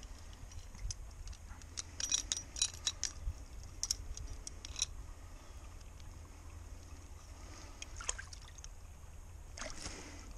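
Short light clicks and clinks of a Duke 1.5 coil-spring foothold trap being handled and set, a quick run of them from about two to five seconds in and another near eight seconds, over a low steady rumble.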